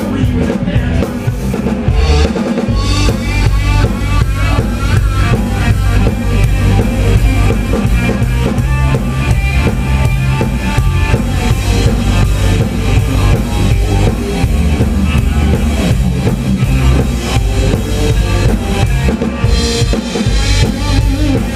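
Live blues-rock band playing, with the drum kit loudest (kick, snare and cymbals) over electric guitar and a heavy low end.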